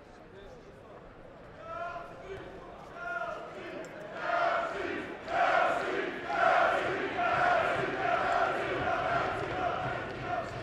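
Boxing crowd chanting and shouting. Scattered calls start about two seconds in, then from about four seconds in the chant swells into loud, repeated shouts roughly once a second.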